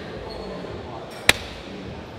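A single sharp slap of a hand on skin, a little past halfway, over the steady background noise of the gym.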